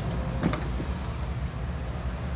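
Steady low rumble of background vehicle noise, with one light click about half a second in as a wiring connector is handled.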